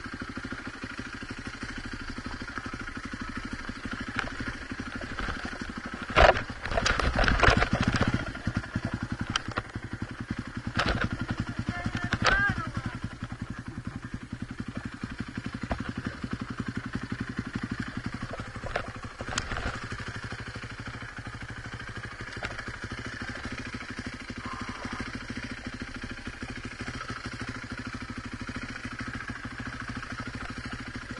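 Enduro dirt bike engine running steadily at low revs on a steep rocky descent. A burst of loud knocks and clatter from the bike over rocks comes about six to eight seconds in, with a few single knocks later.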